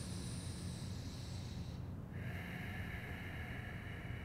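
A person's slow, deep breathing: one long breath lasting about two seconds, then a second, lower-pitched breath, over a low steady background hum.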